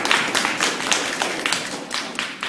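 Applause from a small audience, a dense run of hand claps that thins out near the end.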